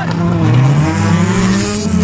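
Several autocross race cars' engines revving on a muddy dirt track, more than one engine at different pitches, rising and falling as they accelerate and slide through a turn.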